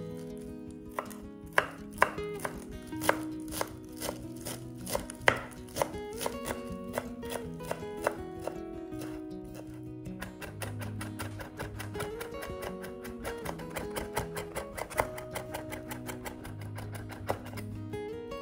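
Kitchen knife chopping fresh parsley on a wooden cutting board. Sharp, uneven knocks come first, then a faster, steady run of chops in the second half.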